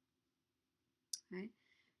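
Near silence for about a second, then a single short, sharp click, followed at once by a spoken "okay".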